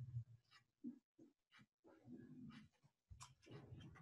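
Near silence: faint room tone with a few soft, short, indistinct sounds.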